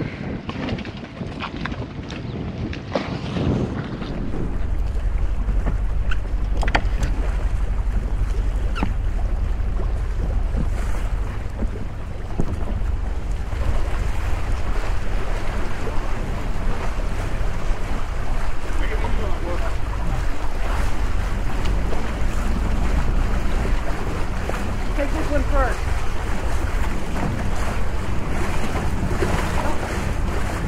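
Wind buffeting the microphone on a boat's deck, a steady low rumble that starts about four seconds in and holds on, with faint voices now and then.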